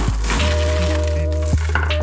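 Dense clattering and crackling of magnetic rods and steel balls rubbing and snapping against each other as a tangled stick-and-ball magnet structure is grabbed and squeezed by hand, with a few sharp clicks. Background music with a steady bass plays throughout.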